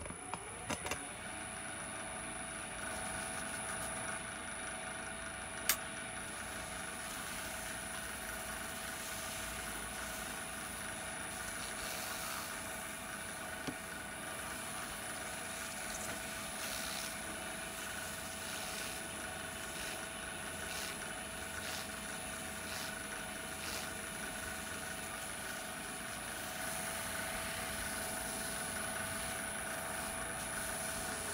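Wood lathe running at a steady speed, a constant motor hum and whine with several steady tones. A single sharp click about six seconds in.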